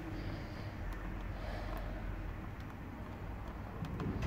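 Faint, steady trickle of old engine oil running in a thin stream from the loosened oil filter housing of a Renault Master into a drain pan, over a low background rumble with a few light ticks.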